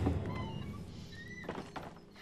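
A deep, low thud from a TV drama's soundtrack, fading away, with a faint click about one and a half seconds in.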